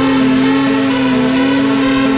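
Snowmobile engine held at high, steady revs under throttle, with electronic music playing along.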